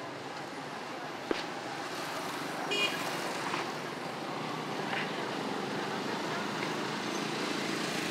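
Street traffic with motorbikes passing, a steady background hum of engines and road noise. A sharp click sounds just after a second in, and a brief high-pitched tone near three seconds.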